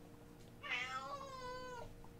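A domestic cat meowing once: a single drawn-out meow a little over a second long, starting just over half a second in, which its owner takes as the cat being angry.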